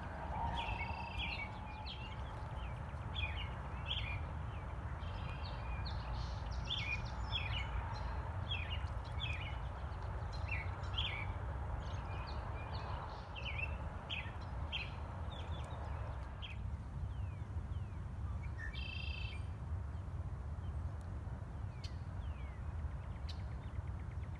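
Wild songbirds chirping and calling, many short calls for the first sixteen seconds, over a steady low rumble. Near the end comes one longer, buzzy red-winged blackbird song.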